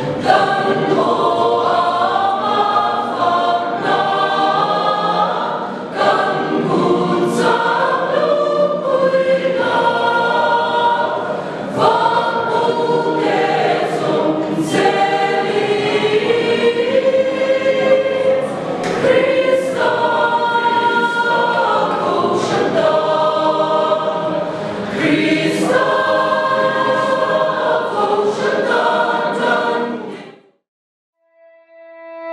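Mixed choir of men and women singing together in harmony, several voice parts holding and moving through sustained notes.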